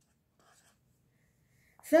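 Faint scratching of a pen on paper as a numeral is written and circled: a few short strokes about half a second in, then a woman's voice begins near the end.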